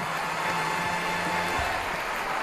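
Theatre audience applauding steadily as a performer comes on stage, with an orchestra holding a low sustained note underneath.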